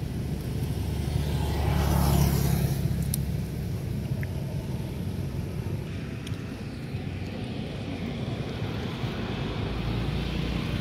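Road traffic: a steady low rumble, with a vehicle passing close by that swells to its loudest about two seconds in and then fades away.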